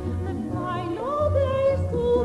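Operatic soprano singing over instrumental accompaniment; about a second in her voice rises to a long held note with vibrato.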